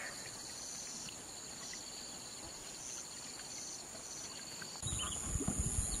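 Insects trilling steadily in a high pitch, with a second, higher chirp starting and stopping every second or so. Near the end a low rumble comes in and the insect sound changes.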